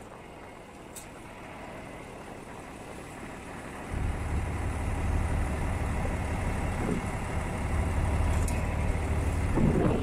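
John Deere 2955 tractor's six-cylinder diesel running, heard from the operator's seat. About four seconds in, a deep, louder low rumble comes in suddenly and carries on.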